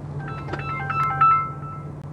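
A mobile phone sounding a quick run of electronic beeps that step between several pitches, over a steady low hum.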